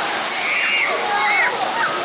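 Huge wall of spray from a shoot-the-chute water ride's boat plunge crashing back down onto the splash pool in a loud, continuous rush of water. People's voices call out over it in rising and falling cries.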